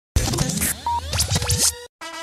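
Intro sound effect: a quick, busy burst of scratch-like noise with fast rising and falling pitch sweeps, cutting off abruptly just before a music intro begins.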